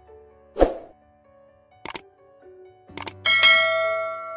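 Subscribe-button animation sound effects over soft music: a short swish, two sharp clicks about a second apart, then a bell-like ding that rings on and slowly fades.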